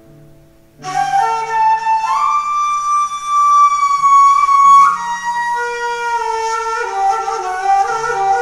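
Kaval (long wooden end-blown flute) playing a slow melodic line in makam segah. It enters about a second in, holds one long high note and then moves on through shorter notes.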